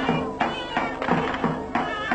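Folk dance music from a shrill, nasal zurna (double-reed pipe) playing a melody over a regular davul drum beat of about three strokes a second.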